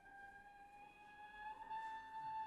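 Solo cello played softly with the bow: one long high note that slides slightly upward about a second and a half in and swells a little.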